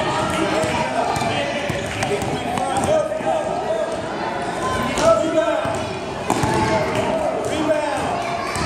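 A basketball bouncing on a hardwood gym floor as it is dribbled, the bounces echoing in a large gym, with a louder knock about five seconds in.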